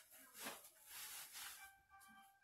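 Near silence: faint rustling of clothing as a shirt is pulled on and down, then faint background music with a few held notes starting near the end.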